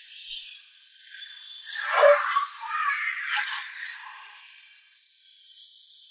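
Film sound effects of a fire blast rushing through: a loud burst about two seconds in and another about a second later, then dying down. The soundtrack is thin and tinny, with no bass.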